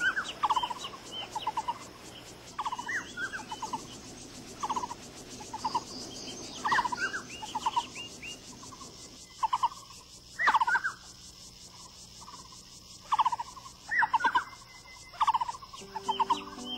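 Birds calling over and over: short clusters of quick chattering notes and higher arched whistles, coming in groups with a quieter stretch a little past the middle, over a soft steady hiss.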